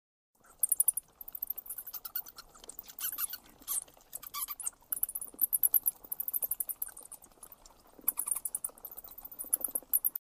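Bats squeaking and chittering in quick, high-pitched bursts of rapid clicks that come in waves and cut off suddenly at the end.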